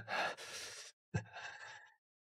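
A man's two breathy exhalations, like sighs, the first slightly longer than the second.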